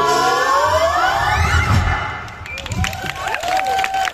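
A group of singers holds and ends the final chord of a song, one line sliding upward before it stops about halfway through. Then scattered audience applause starts, with a few high voices calling out.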